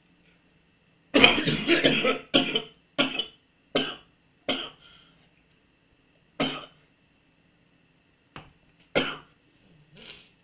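A man coughing: a long, harsh fit of coughs about a second in, then single coughs at shrinking intervals, with a last one near the end.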